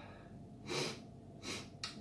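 A man breathing out twice in short, breathy puffs after a sip of whisky, the first a little longer and louder, followed by a short mouth click near the end.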